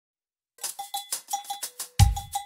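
Percussion intro: a bright, bell-like struck instrument playing a quick, even pattern of about six strokes a second, starting about half a second in. A deep drum beat lands at the very end.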